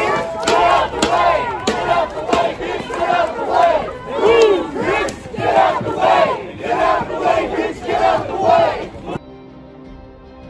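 A crowd of demonstrators shouting and yelling together at a police line, many voices overlapping. The shouting cuts off suddenly about nine seconds in.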